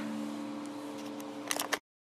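The last chord of an acoustic guitar rings on and slowly fades. About one and a half seconds in come a few quick clicks and knocks of a hand handling the recording camera, and then the sound cuts off suddenly.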